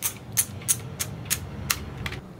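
Thumbwheel of a disposable film camera being wound to advance the film, giving a run of sharp ratchet clicks about three a second.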